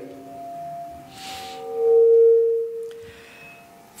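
Keyboard holding sustained notes that ring on as the worship music dies away. The lowest note swells loud about two seconds in and then fades out, with a short hiss about a second in.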